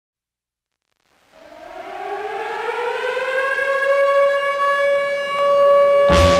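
A siren wail opens the song. It starts about a second in, rises in pitch as it swells louder, then holds one steady pitch.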